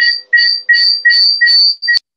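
Audio feedback squeal from an echo loop on a video call: loud shrill pulses repeating about three times a second, the upper tone growing stronger. It cuts off suddenly at the end.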